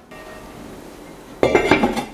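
Enamelled cast-iron lid set down onto its pan about a second and a half in: a sudden metallic clatter with a ringing clink.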